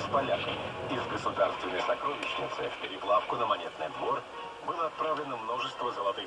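Indistinct talking that the recogniser could not make out; no other sound stands out.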